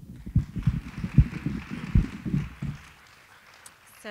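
Microphone handling noise as a handheld mic is passed over and set at a lectern: irregular low thumps and rustling for about three seconds, then quieter.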